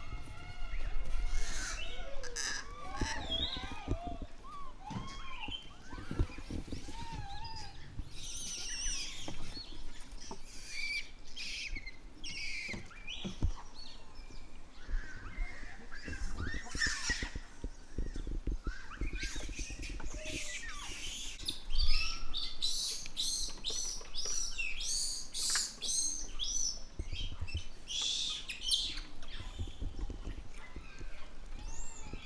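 Japanese macaques calling: short rising-and-falling coo calls in the first few seconds, then scattered chirps, with a run of fast, high chirps near the end.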